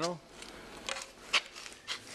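Light handling noise: soft rustling with three short clicks, about a second in, a little later, and near the end.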